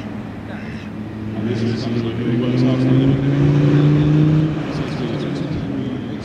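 Land Rover Defender 90's Td5 five-cylinder turbodiesel engine pulling round a dirt track, its note rising slowly in pitch and growing louder as it nears, loudest around the middle, then easing off.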